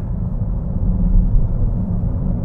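Steady low rumble of road and engine noise inside the cabin of a BMW X7 xDrive40d cruising at highway speed.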